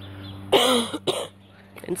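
A man coughing twice: a longer cough about half a second in and a short one just after.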